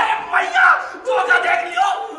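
Several voices yelling and wailing over one another, high and wavering in pitch.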